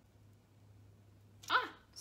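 A faint, steady low hum, then about one and a half seconds in a single short, sharp yelp-like vocal sound.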